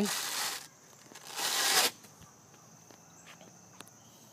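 Velcro strips ripping apart as a motorcycle seat is pulled off: a short rip at once, then a longer one about a second later.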